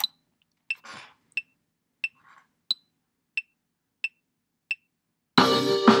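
Soundtrap's metronome clicking a two-bar count-in at 90 beats per minute, eight evenly spaced clicks with the first of each bar pitched higher. About five and a half seconds in, as recording begins, the song's backing tracks start playing loudly.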